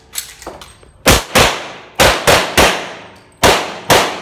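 Seven pistol shots fired in quick strings, two, then three, then two, about a third of a second apart within each string. Each shot has a long ringing echo off the concrete-block walls and low ceiling of the covered bay.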